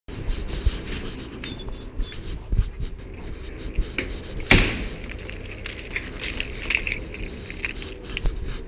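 A metal security screen door being pulled shut with one sharp bang about halfway through, then a bunch of keys on a carabiner keyring jangling and clicking against the lock as the door is locked.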